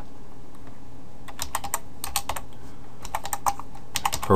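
Typing on a computer keyboard: short runs of key taps, starting about a second in, as a command is typed, over a steady low hum.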